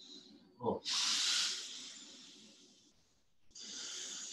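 A person's long, audible breath, hissing through the mouth and fading out over about a second and a half. A second breath starts near the end.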